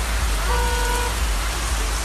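Steady hiss of rain falling outdoors, with a short single-pitched beep about half a second in.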